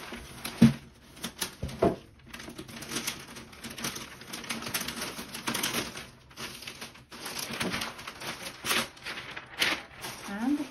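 Tissue and wrapping paper rustling and crinkling as it is handled and folded back by hand, with a sharp knock a little over half a second in and a smaller one near two seconds.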